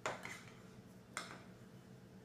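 Metal spoon scraping against a bowl of ice cream twice, about a second apart, each a short sharp scrape.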